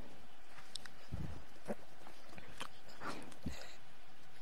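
Quiet room tone in a lecture hall, with a few faint short clicks and soft low thumps scattered through it.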